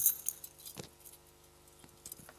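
Metal chains and lid of a silver thurible jingling as the censer is handled and swung to incense the Gospel book, with a few brief clinks in the first second.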